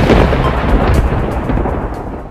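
A loud rumble of thunder, strongest at the start and slowly dying away.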